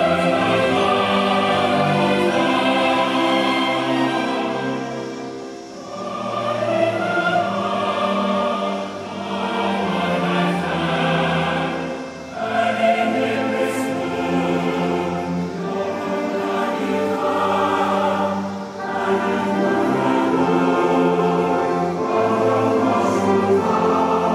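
Choir singing with orchestral accompaniment, a solemn anthem-like piece in long held phrases with short breaks between them.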